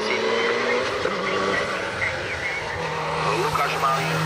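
Mitsubishi Lancer Evolution hill-climb car's turbocharged four-cylinder engine pulling hard at high revs up the course, its note holding fairly steady and growing louder near the end as the car comes closer.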